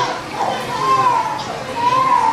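Children's high voices chattering and calling over a murmur of other people's voices.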